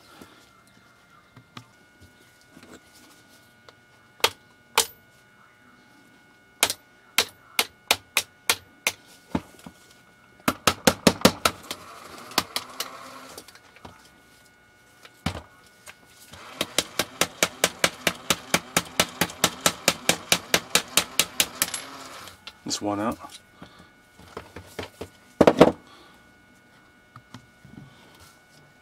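Hammer tapping a punch to drive out the dowel pins from a cordless screwdriver's housing: sharp metal clinks, first single strikes and a slow run, then two long runs of quick, even taps several a second, with one harder strike near the end.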